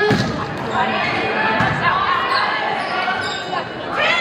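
Volleyball rally in a gym: a sharp serve hit at the start and further hand-on-ball strikes near the end, echoing in a large hall over players and spectators calling out.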